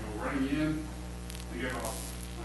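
Steady electrical mains hum, with indistinct voices talking over it and a couple of faint clicks near the end.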